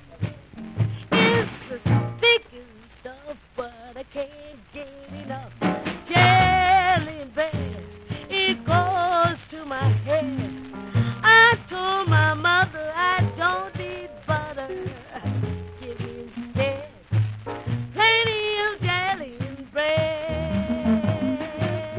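A 1949 rhythm-and-blues 78 rpm record playing, with a band and rhythm accompaniment over a steady low beat. The disc is worn, which makes it a hard listen.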